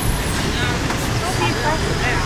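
Busy street traffic: a city bus and motor scooters passing, with a steady rumble of engines and tyres.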